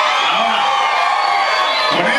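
Concert audience cheering and shouting, with several long high shouts overlapping.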